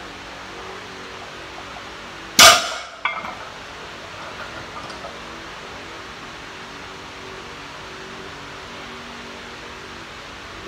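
A 425 lb barbell loaded with iron plates dropped onto a concrete garage floor. It lands with one loud crash about two seconds in, followed by a smaller knock about half a second later.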